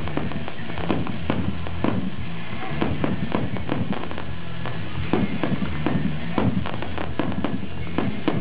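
Fireworks display: a dense run of aerial shells bursting, two or three sharp bangs a second with crackle between them.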